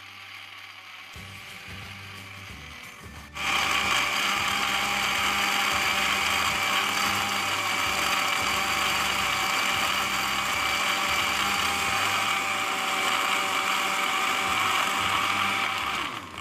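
Electric blender motor switching on abruptly about three seconds in, then running loud and steady with a constant whine, blending milk, ice cream and ice cubes into a chocolate milkshake. A fainter low hum comes before it starts.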